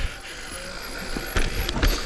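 Commencal mountain bike rolling slowly over a dirt trail: tyre and drivetrain rattle over a low rumble, with two sharp knocks near the end.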